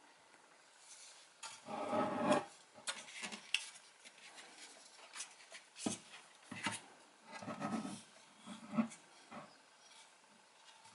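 Handling noise from a loose subwoofer driver being moved about in its cabinet cutout: irregular rubbing and scraping, loudest about two seconds in, with a few sharp knocks and a second stretch of rubbing near the end.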